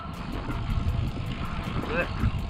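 Steady low rumble of wind on the microphone and road noise from a road bike in motion.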